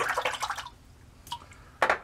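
Water splashing and dripping at a bathroom sink during a wet shave, busiest in the first half-second, then a short splash again just before the end.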